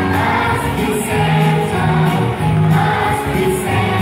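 Music: a Christmas song sung by a group of voices over an instrumental accompaniment with a steady beat.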